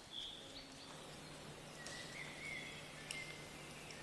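Faint outdoor ambience with a few thin, high, steady-pitched chirps of distant birds.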